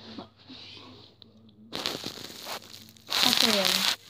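A person's breath rushing close to the microphone: a shorter burst about two seconds in, then a loud, long breathy exhale near the end with a falling voiced tone in it, like a sigh. There is faint rustling of handling before it.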